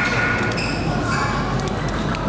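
Background murmur of spectators in a large hall, with a few light ticks of a table tennis ball bouncing as a player readies his serve.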